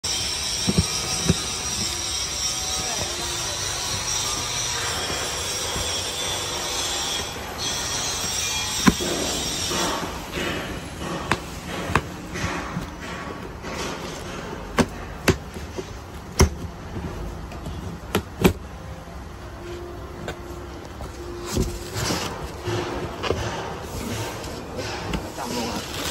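Utility knife slitting packing tape along a cardboard box seam: a steady scraping hiss for about the first ten seconds, then a run of sharp clicks and knocks as the cardboard is handled and the flaps are opened.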